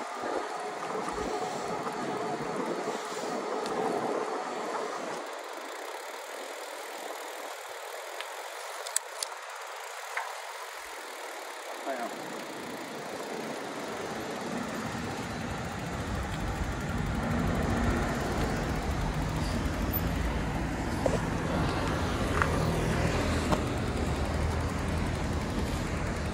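Riding noise from an electric-assist bicycle: wind over the microphone and tyres on the road surface, with a few light clicks about nine seconds in. From about halfway, a low rumble of road traffic grows louder.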